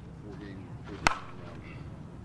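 A softball bat strikes a ball once about a second in: a single sharp crack with a short ring. Faint voices murmur in the background.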